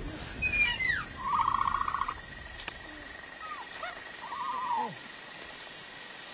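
The Dilophosaurus's film call, given twice. Quick falling chirps lead into a warbling trill of about a second, then shorter chirps and a second warbling call that falls away, over the steady hiss of heavy rain.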